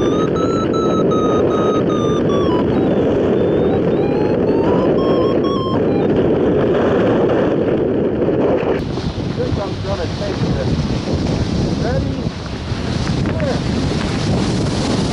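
Wind rushing over the microphone of a hang glider in flight. For the first nine seconds a held tone slowly rises and falls in pitch over the wind. About nine seconds in the sound cuts abruptly to a different stretch of wind noise.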